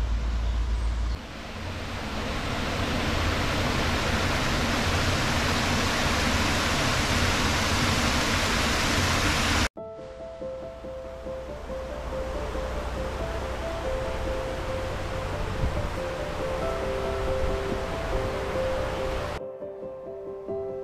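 A loud, steady rushing noise like running water fills the first half and stops abruptly. Soft background music with long held notes follows over quieter ambient noise.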